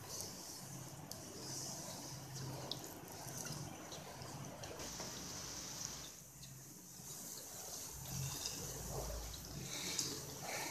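Semolina sizzling in hot oil in a wok as it is roasted and stirred with a wooden spatula: a soft, steady hiss with a few faint scrapes and taps of the spatula.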